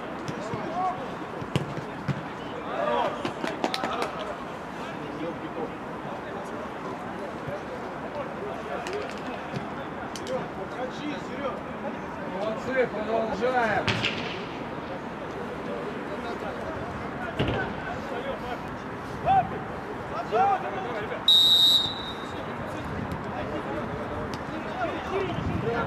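Amateur football match on an artificial pitch: players shout across the field and the ball is kicked now and then with sharp thuds. Near the end a referee's whistle gives one short, shrill blast.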